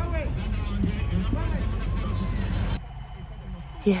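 Low rumble of a vehicle driving, heard from inside the cabin, with people's voices over it. About three seconds in, the rumble drops suddenly to a quieter hum.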